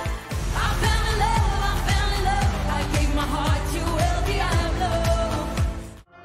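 Pop song with a lead vocal over a steady kick-drum beat of about two beats a second; it cuts off suddenly at the end.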